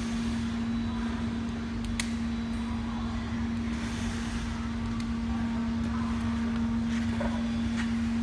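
Steady hum of running factory machinery: one even tone held over a low rumble. A few faint clicks of small plastic containers being set down.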